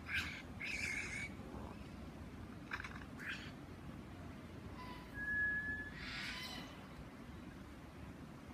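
Superb lyrebird giving a string of short, noisy mimicked calls, with one brief clear single-pitch whistle about five seconds in.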